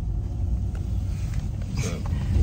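Steady low rumble of a car heard from inside the cabin.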